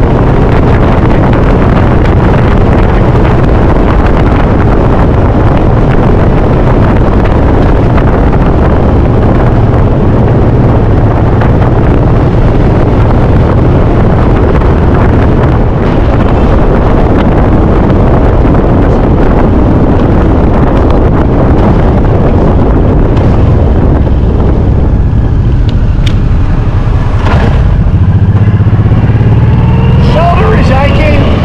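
Motorcycle engine running at road speed under loud wind rush over the microphone. The wind noise eases over the last few seconds as the bike slows.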